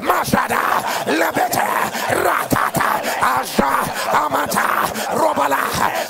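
A man praying aloud in tongues in a fast, unbroken run of syllables, over background music.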